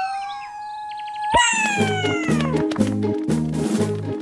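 Cartoon soundtrack: a rising tone that holds steady for about a second, cut off by a sharp pop a little over a second in. Bouncy background music with a steady beat, about two beats a second, and falling glides then takes over.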